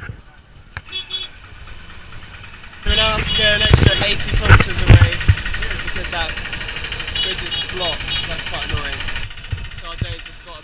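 Voices over loud roadside traffic noise from auto rickshaws and motorbikes. The noise starts abruptly about three seconds in, and heavy low thumps of wind on the microphone near the middle are the loudest part.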